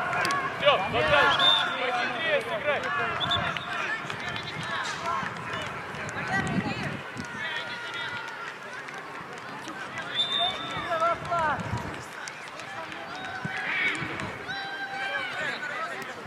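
Young voices shouting and calling on an outdoor football pitch, several overlapping, loudest in the first two seconds.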